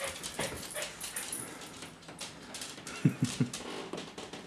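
A French bulldog making three short, low sounds in quick succession about three seconds in, with light clicks and taps scattered around them.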